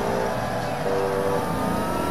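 Several music tracks playing over each other: held electronic notes that change every half second or so over a low rumble, with a slowly gliding tone entering about a second in.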